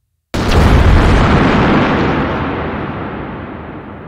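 Explosion sound effect for a crashing fireball: a sudden heavy boom about a third of a second in, followed by a deep rumble that fades slowly over the next few seconds.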